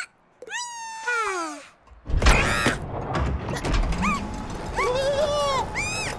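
Cartoon chick characters making high-pitched squeaky vocal calls: a falling whine in the first couple of seconds, then short squeaks later on. About two seconds in, a sudden loud noisy sound starts, and a steady noisy bed runs under the later calls.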